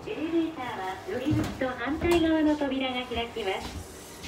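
Elevator's recorded female voice announcement in Japanese, speaking for most of the moment.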